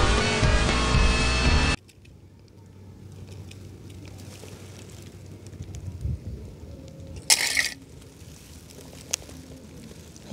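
Loud excerpt of an animated film's soundtrack with music, which cuts off abruptly about two seconds in. After it, faint outdoor background, with a short rustle a little after seven seconds and a single click near nine seconds.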